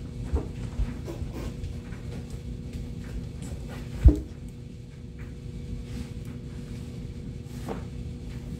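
A cardboard box being carried and handled, with small knocks and footsteps early on and one sharp thump about four seconds in as the box is bumped down against a surface. A steady low hum runs underneath.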